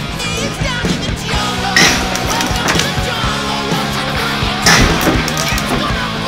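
Rock music playing, with two loud smashing impacts about three seconds apart as objects are struck and broken.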